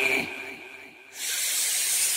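A break in a hardtekk DJ mix. A held vocal note fades out over the first second, then a steady white-noise hiss effect starts suddenly and runs on.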